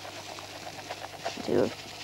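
Chocolate crispies breakfast cereal poured into a clear plastic container: a rapid patter of small dry clicks as the pieces land on the cereal already inside.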